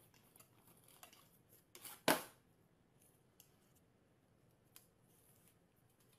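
A small dog pawing and tearing at a cardboard box: faint scratching and rustling of the cardboard, with one louder sharp crackle about two seconds in.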